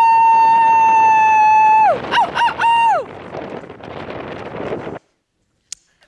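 A woman yelling outdoors in the cold: one long, high, held shout, then three short yells, followed by a couple of seconds of wind noise on the microphone. The sound cuts to silence about five seconds in.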